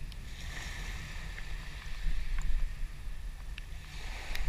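Wind buffeting the camera microphone in a steady low rumble, over small waves washing onto a sandy beach, with a few faint clicks.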